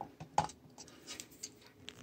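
A few faint clicks and ticks, one sharper click about half a second in, over quiet room tone.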